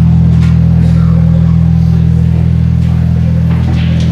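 Live rock band holding one loud, steady low note or chord on electric bass and guitar, sustained without change.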